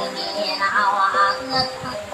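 Maranao dayunday singing: a voice carrying a wavering, ornamented melody over steady instrumental backing.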